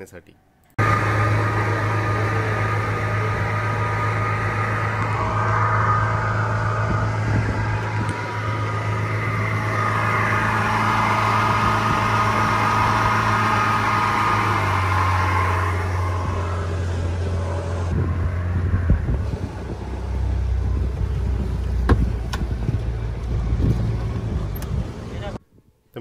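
Yamaha 115 outboard motor driving a speedboat at speed, a steady engine drone over the rush of water from the wake. The engine note drops lower about halfway through and again about three-quarters through.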